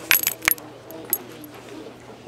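A quick cluster of sharp metallic clicks and clinks in the first half second, with one more clink about a second in, each ringing briefly.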